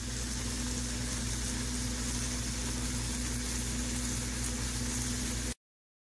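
Chicken meatballs sizzling in hot oil in a cast-iron skillet, a steady frying hiss over a low, steady hum. The sound cuts off suddenly shortly before the end.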